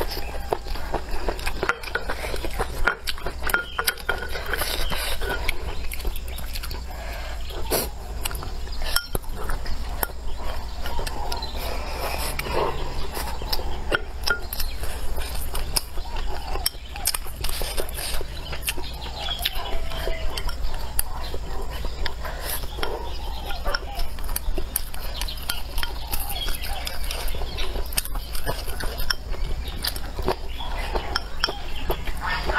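Utensils clicking and clinking against cookware and dishes, many short sharp knocks in an uneven patter.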